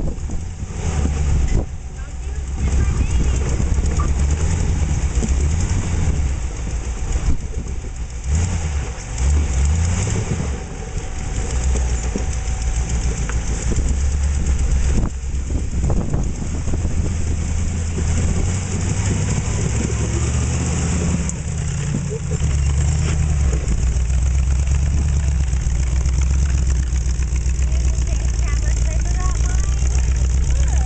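Rock-crawler buggy engine running at low speed and revving up and down unevenly as the buggy crawls up rock ledges, then running more steadily in the second half.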